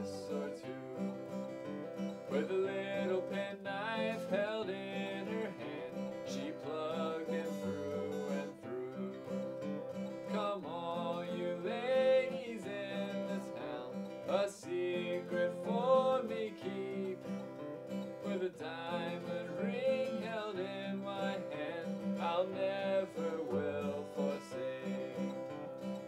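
Instrumental break of an old-time folk tune: a steel-string acoustic guitar strummed steadily under a harmonica in a neck rack playing the melody with bent, sliding notes.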